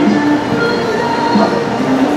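Background music with held notes that change pitch now and then, over steady room noise.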